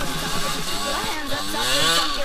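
Yamaha DT 125R's two-stroke single-cylinder engine revving as the dirt bike is ridden, its pitch rising over the last second.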